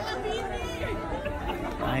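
Indistinct chatter of several people talking at once, with a man's voice starting to speak just before the end.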